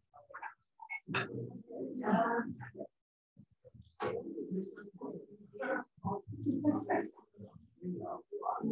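Indistinct conversation among people in a room: short spoken phrases with brief pauses between them, too unclear to make out words.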